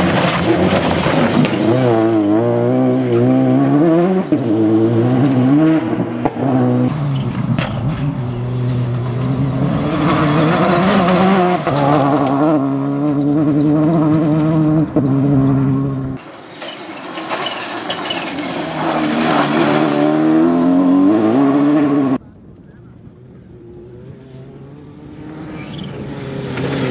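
Citroën DS3 rally car driven hard on a loose gravel stage, its engine revving up and dropping back through gear changes over several passes. The sound cuts suddenly between passes, and near the end the car is quieter before it builds again.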